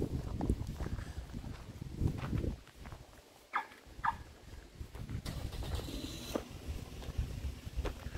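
Footsteps and handling of a handheld camera while walking on a paved road, heard as irregular low thuds and rumble, with two short chirps about three and a half and four seconds in.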